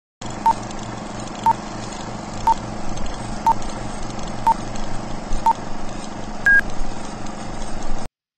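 Film-leader countdown sound effect: six short beeps about a second apart, then one higher, longer beep, over a steady hiss and low hum.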